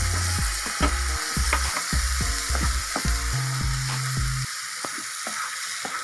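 Tomato purée and fried onion masala sizzling in a nonstick frying pan, with a spatula scraping and tapping through it in short strokes as it is stirred in. Low background music plays under it and stops about two-thirds of the way through.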